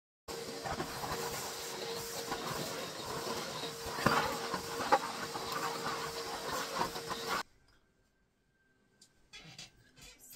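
Canister vacuum cleaner running on a hard floor: a steady rush of suction with a constant whine from the motor, and a couple of knocks partway through. It cuts off suddenly about seven seconds in.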